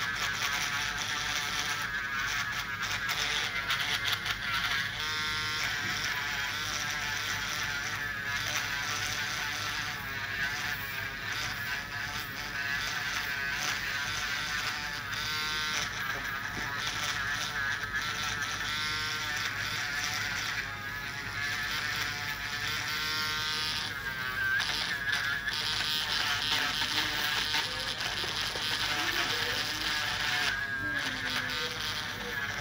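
Electric podiatry nail drill with a rotary burr grinding down a thick fungal toenail. It makes a continuous buzzing whine that wavers in pitch as the burr bites into the nail.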